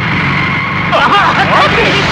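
A car running fast with road noise. About a second in, several people start shouting over it.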